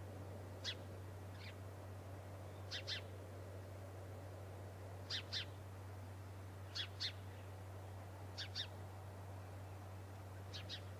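A bird calling repeatedly with short, sharp, high notes, mostly in quick pairs, every second and a half to two seconds. A steady low hum runs underneath.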